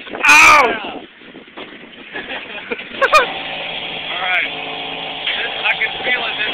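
A loud whoop just after the start and shorter yells about three seconds in, from a person riding a moving fairground ride, over the ride's running noise; a steady hum sounds for about two seconds in the second half.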